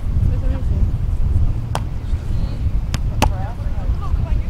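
Hands striking a volleyball: one sharp smack a little under two seconds in, then two more about a third of a second apart near the end. Under them is a steady low wind rumble on the microphone, with faint voices.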